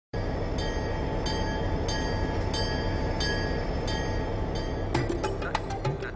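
A steady train rumble with a high clatter repeating about every two-thirds of a second. About five seconds in, sharp percussive hits begin as the song's music starts.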